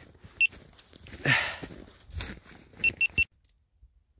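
Short, high electronic beeps: a single beep, then three quick beeps close together about three seconds in, over low rustling.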